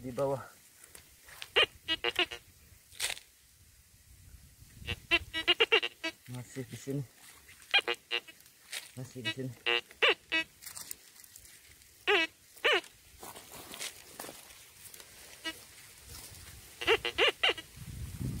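Metal detector giving its target response: short warbling tones in about half a dozen bursts a few seconds apart as the search coil is held and moved over a dug hole, signalling a metal target in the soil.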